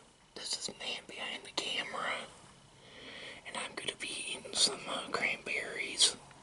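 A man whispering in short breathy phrases, with a brief pause partway through.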